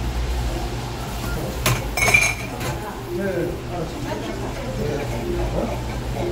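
Ceramic mugs clinking against each other and the stainless sink as they are rinsed under a running tap, with a sharp, ringing clink about two seconds in.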